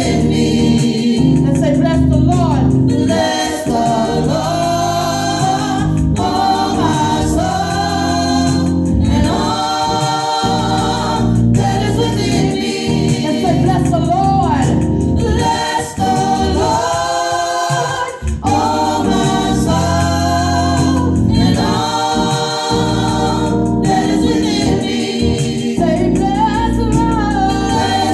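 Small gospel choir singing in close harmony over sustained keyboard accompaniment, with brief dips between phrases.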